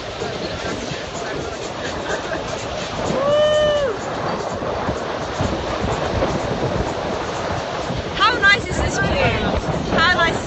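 Wind buffeting the microphone over the rush of water along a sailboat's hull as it sails. A person's voice holds one drawn-out call about three seconds in, and brief high vocal sounds come near the end.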